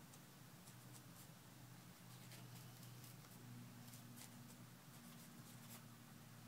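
Near silence: faint rubbing of a cloth over a glass touchscreen digitizer, with a few light ticks, over a low steady hum.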